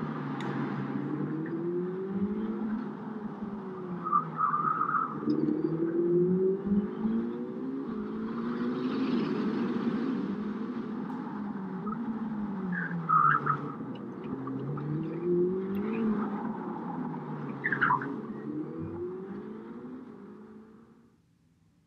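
Ferrari SF90 Stradale's twin-turbo V8 revving and shifting while driven hard, its pitch climbing and dropping again about five times. A few brief higher-pitched squeals come through, and the sound begins to fade near the end.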